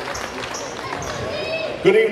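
Basketballs bouncing on a hardwood gym floor, with scattered thuds over the murmur of a crowd in a large hall. Near the end a man starts speaking over the PA, the loudest sound.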